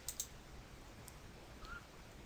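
A couple of short computer mouse clicks at the start, then faint room tone with one more faint click about a second in.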